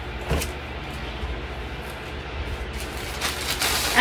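Clothing being handled close to the microphone: fabric rustles and brushes, more of them near the end, over a steady low hum.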